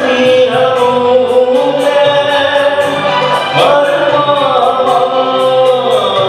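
Male voice singing a Hindi film song live through a PA, holding long wavering notes, with tabla strokes keeping a steady beat about two to three a second and electric guitar accompaniment.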